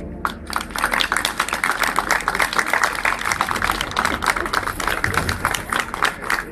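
Crowd applauding, a dense patter of many hands clapping that starts about a quarter second in and keeps on steadily.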